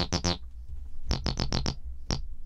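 Roland TB-303 software synth on a sawtooth acid-bass patch playing quick runs of short, plucky notes, each bright at the start and quickly dulling. There is a short pause in the middle, over a low steady hum.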